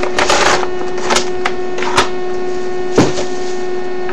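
Plastic action-figure packaging being handled and pulled apart: a crinkling rustle just after the start, then three sharp plastic clicks about a second apart. A steady hum runs underneath.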